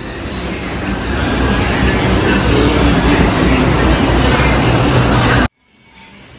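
Loud, steady machinery noise, a dense rumble with hiss. It cuts off suddenly near the end.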